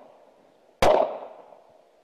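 A single handgun shot about a second in, echoing for about a second, as the echo of a rapid volley of shots dies away at the start.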